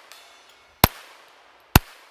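Two shots from a .22 LR Ruger Mark IV 22/45 pistol, a little under a second apart, each a sharp crack followed by a short echoing tail.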